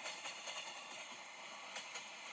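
Faint, steady sound effect of a locomotive under way, heard as a hissing rattle with a few light clicks.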